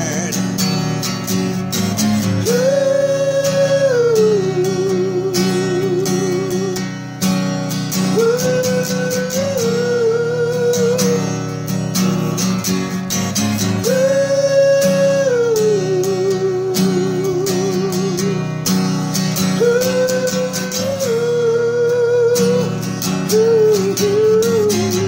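Acoustic guitar playing chords, with a slow melody line of long held notes with vibrato over it, in four phrases that each start high and step down.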